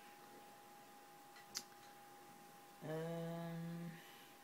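ASUS G73 laptop cooling fan running fast with a steady thin whine, sped up as the machine heats up. There is one short click about a second and a half in, and near the end a person hums a drawn-out "mmm", the loudest sound here.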